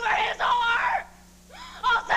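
A woman screaming in anger for about a second, then a short pause before her voice starts up again near the end.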